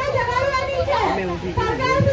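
Speech: a woman talking into a handheld microphone, with other voices around her.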